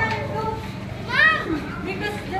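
Children's voices as they play and run about, with one high, rising-and-falling shout a little over a second in.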